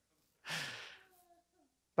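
A man's short, breathy exhale, like a sigh after laughing, about half a second in, fading out within half a second.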